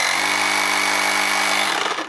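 Bosch EasyPump cordless air pump running in its override mode, with no preset pressure to stop it: a steady motor-and-piston drone with a high whine. It cuts off near the end.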